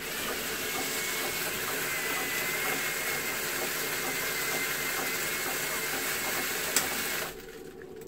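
Automatic toilet seat-cover mechanism running after its button is pressed, a steady whirring hiss with a faint high whine as the plastic sleeve is drawn round the seat ring. It stops after about seven seconds.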